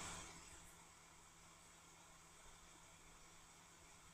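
Near silence: faint room tone with a low, steady hum. The drill and hole saw shown at work are not heard.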